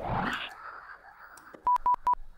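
The tail of a hip-hop track fading out about half a second in. Near the end comes a quick run of identical short electronic beeps at one steady pitch.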